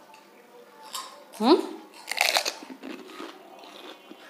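Crisp fuchka (pani puri) shells crunching as they are bitten and chewed, in a few short bursts around the middle, with a brief voice-like sound between them.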